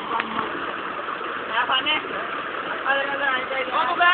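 Steady rush of water gushing into a bathing tank, with young men's voices calling out over it.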